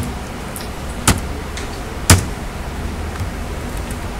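Computer keyboard keystrokes: three sharp key clacks about a second apart, with fainter key taps between them, over a steady low hum.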